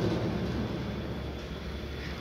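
Steady low hum and background noise of a large store's interior, gently fading, with no distinct event.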